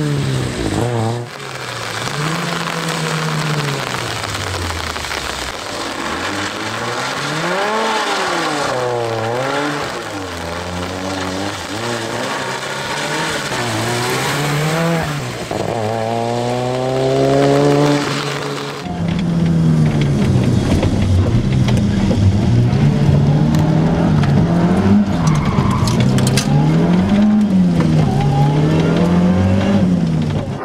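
Ford Sierra RS Cosworth's turbocharged 2.0-litre four-cylinder engine revving hard at competition pace, its pitch climbing and dropping over and over with each gear change and lift. About two-thirds of the way in, the sound cuts to a closer, rougher run of quick rises and falls in revs.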